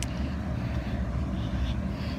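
Wind buffeting a phone's microphone: a steady low rumble, with one brief click at the very start.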